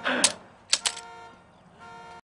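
A wounded man's short pained groan, falling in pitch, then sharp clicks: one just after the groan and two quick ones close together about three-quarters of a second in, over a faint steady tone.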